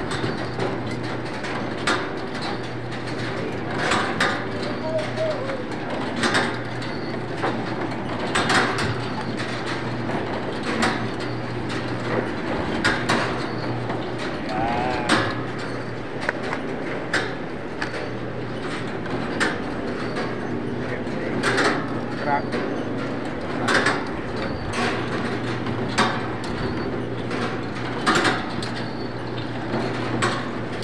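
Egg grading machine running: a steady hum with a loud mechanical clack about every two seconds as eggs roll along its metal sorting lanes.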